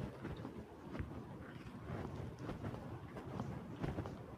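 Footsteps on dry dirt and leaf litter: a few soft, irregular crunches over a low, steady rumble.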